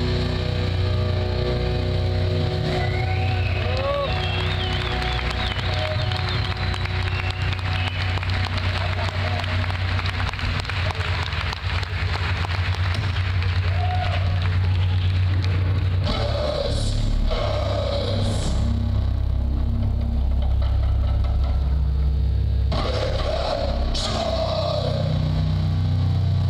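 Sludge/doom metal band playing live: heavy, distorted guitar and bass chords held and left ringing in a slow droning passage. Wavering high feedback tones sound a few seconds in, and there are short noisy surges about two-thirds of the way through.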